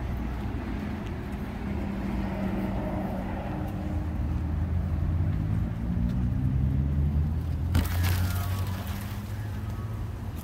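A motor vehicle's engine running over a steady low rumble, its note rising for a few seconds in the middle, with one sharp click about eight seconds in.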